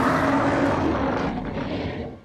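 A monster's drawn-out roar from an animated series' soundtrack, loud and rumbling, dying away near the end.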